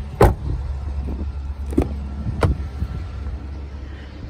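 2023 Chevrolet Silverado 1500 pickup's rear door shutting with a loud thump just after the start. Two sharper knocks follow about two seconds in, over a steady low hum.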